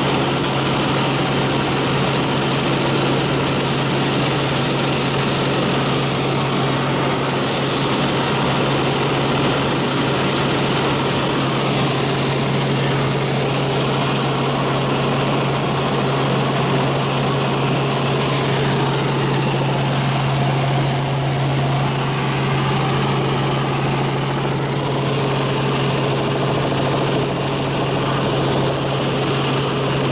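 A helicopter in flight, heard from inside the cabin: a steady, loud drone of engine and rotor with a strong deep hum held at one pitch throughout.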